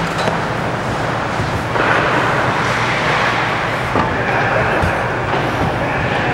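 Ice hockey rink ambience: a steady noisy wash of skates on the ice and the arena's background hum, with a single knock about four seconds in.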